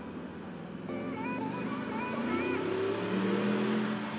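Bentley Bentayga's twin-turbocharged V8 accelerating hard, the exhaust roar climbing in pitch and growing louder from about a second in, with a rush of air and road noise.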